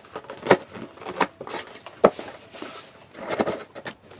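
Packing tape on a cardboard parcel being cut open with scissors: a few sharp clicks and snips, a short hiss a little after the middle, and cardboard scraping and rustling near the end.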